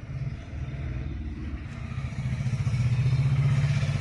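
A motor vehicle engine running, a low rumble that grows louder over the second half.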